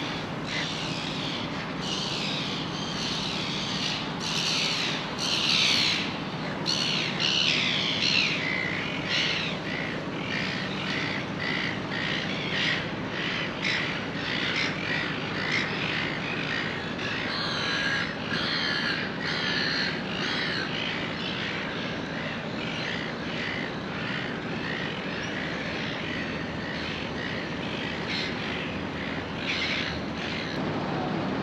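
A flock of birds squawking and calling over one another, thickest in the first ten seconds, over a steady low hum.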